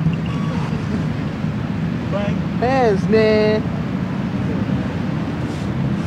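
A steady low rumble of background noise under voices. About two and a half seconds in, a loud high-pitched voice call glides up and down, then holds briefly.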